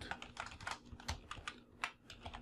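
Computer keyboard being typed on: a quick, uneven run of key clicks as a line of code is entered.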